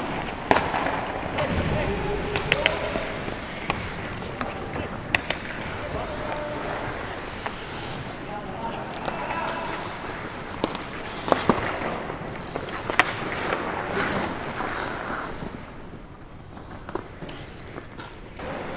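Ice hockey practice: skate blades scraping and carving on the ice, with sharp clacks of sticks and puck striking, several of them loud. Players call out now and then.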